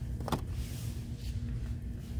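Steady low rumble of store background noise, with one brief crackle near the start as a cardboard light-bulb box on the shelf is touched.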